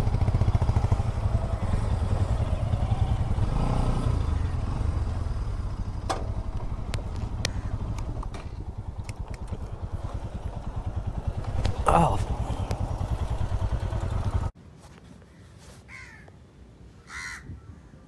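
Motorcycle engine idling steadily, cutting off abruptly about fourteen seconds in to quiet outdoor background with a couple of short bird calls near the end.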